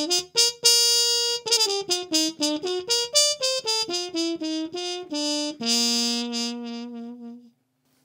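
Trumpet played through a Harmon mute with its hole still open, the mute's ordinary sound before it is plugged. A quick phrase of short notes moves up and down and ends on a long held low note that stops shortly before the end.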